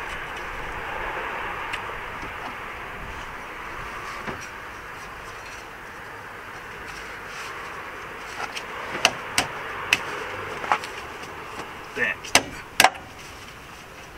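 Metal knocks and clinks as a new front lower control arm is worked into its mounting under the car, a handful of sharp clicks in the second half, over a steady background rushing noise.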